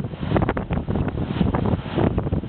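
Wind buffeting the microphone of a camera riding in a moving car, with road and vehicle noise underneath; loud and gusty, fluttering unevenly.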